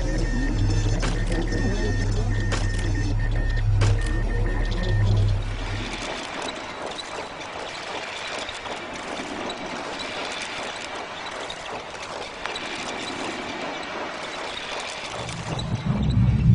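Animation soundtrack of music with machine-like sound effects. For the first five seconds there is a loud low hum with regular clicks and short repeated high beeps. After that it drops to a softer, busy hissing clatter, and a low rumble comes back near the end.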